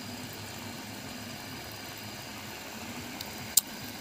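Steady noise of a fish tub's aeration: air bubbling through the water, with the low hum of the pump. A single sharp click about three and a half seconds in.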